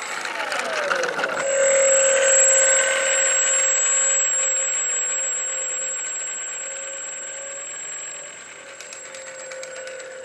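Electric motor and propeller of an FMS Sky Trainer Cessna 182 RC plane running: a whine that drops in pitch over the first second or so, then holds a steady pitch and slowly fades as the plane moves away.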